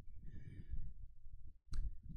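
A man's soft breathing close to a microphone, with a short sharp intake of breath near the end.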